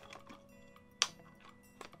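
A sharp plastic click about a second in, with a few lighter clicks near the end, as the broken-off head and body of a plastic bobblehead figure are handled and knocked together.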